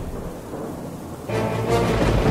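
Thunder rumbling with rain, mixed under dark music; the rumble swells suddenly loud a little over a second in.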